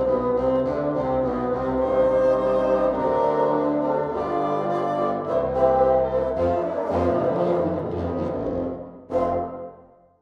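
A bassoon ensemble playing a tune together in harmony, with low bass notes under the melody. The playing breaks off about nine seconds in, then one short last chord fades away.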